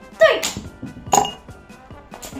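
A plastic sketch pen dropping into a drinking glass, clinking against the glass as it lands.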